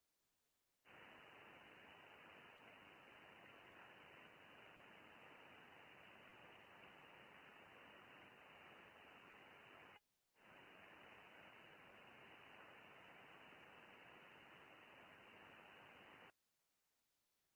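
Faint, steady shortwave receiver hiss heard through the radio's narrow voice-band filter, with nothing above about 3 kHz. It switches on about a second in, drops out briefly near the ten-second mark, then resumes.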